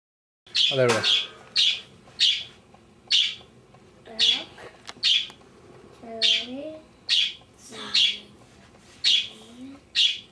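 A person making a string of short, sharp hissing inhales, about one a second, with a few brief voiced squeaks in between.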